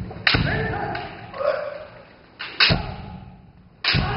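Kendo sparring: three sharp cracks of bamboo shinai strikes and stamping steps on a wooden gym floor, about a second or more apart, each echoing through the hall, with shouted kiai between the first two.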